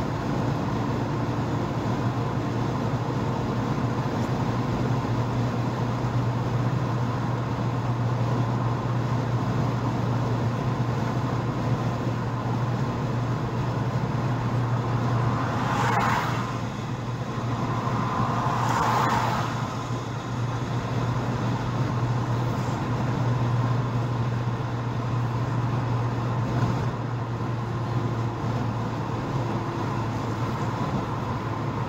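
Car cabin noise while cruising on a highway: a steady low engine hum under even tyre and road rush. About halfway through come two brief whooshes a few seconds apart.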